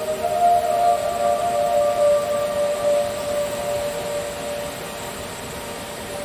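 Slow ambient meditation music of long held tones that shift slowly in pitch and grow a little quieter near the end.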